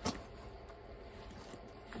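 A soft-sided lunch cooler bag being handled and turned over: one sharp knock right at the start, then a few faint clicks and rustles from its metal zipper pulls and fabric.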